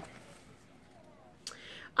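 A pause in a woman's talk: low room tone, then a short mouth click and a soft intake of breath just before she speaks again.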